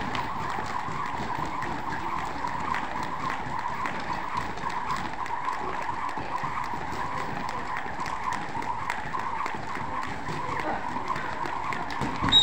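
Two jump ropes spinning and slapping a rubber gym floor, with the jumpers' feet landing, in a fast, continuous patter of ticks over a steady whir.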